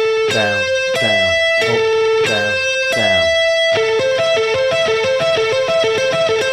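Electric guitar picking a repeating three-note A minor arpeggio on the top three strings, up-down-down, an economy-picking exercise with an inside picking movement. The notes ring evenly about one and a half a second at first, then come quicker from about four seconds in.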